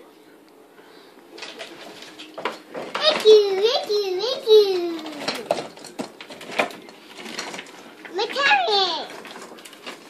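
A young girl's high voice, wordless and sing-song, rising and falling in pitch for a couple of seconds about three seconds in and again briefly near the end, with a few light knocks in between.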